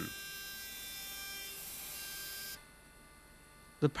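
CNC milling spindle running with a steady high whine while an end mill cuts a metal plate held on a vacuum mat. It cuts off abruptly about two-thirds of the way in, leaving only a faint background hum.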